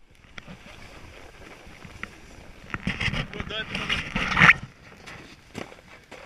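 A man's voice close to the microphone for a couple of seconds, starting a little under three seconds in, exclaiming or talking with bending pitch. Before it there is a low hiss with a few clicks, typical of a snowboard scraping over packed snow.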